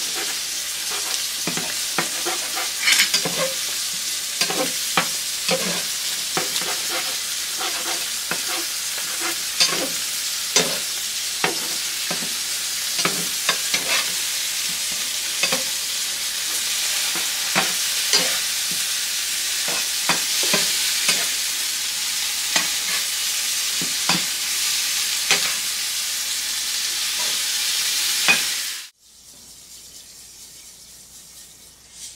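Eggs sizzling in a frying pan as they are scrambled with a metal fork, the fork clicking and scraping against the pan in irregular strokes. The sizzling and clicking stop abruptly near the end.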